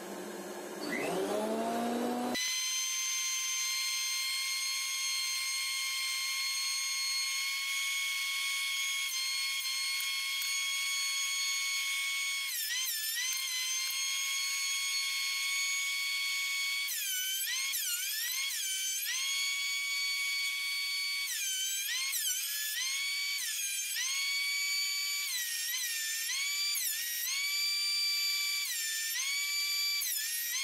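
Einhell TC-SP 204 thickness planer's motor switched on about a second in, its whine rising quickly to a steady high pitch. From about halfway on, the pitch dips and recovers again and again as boards are fed through the cutter head and load the motor.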